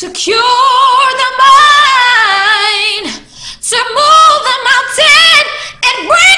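A woman singing a cappella: one long held note with vibrato for about three seconds, then, after a short breath, a run of shorter, quicker notes.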